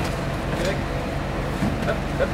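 Lorry engine idling with a steady low hum, faint voices over it.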